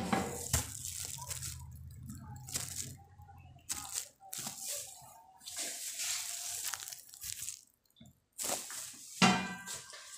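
Vegetable curry simmering under the lid of an aluminium kadai on a gas burner: irregular spells of bubbling and hissing, with a light metal knock of the lid near the start.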